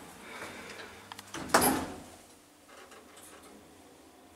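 Pickerings lift car's sliding doors closing, ending in one loud thump about one and a half seconds in. After that there is only a faint steady background.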